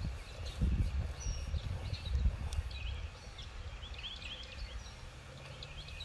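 Small birds chirping outdoors in short high calls, more often in the second half, over a low rumble.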